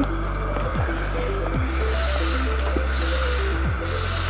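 Background music: a light melodic line of short notes over a steady bass, with soft hissing bursts about once a second.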